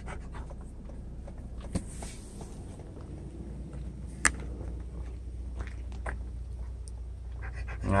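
A dog panting after exertion, tired out, over a low steady hum, with a few sharp clicks, the loudest about four seconds in.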